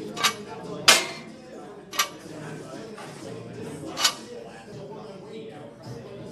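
Barbell and cast-iron weight plates clinking four times as the bar is pressed. The loudest clank comes about a second in and rings briefly.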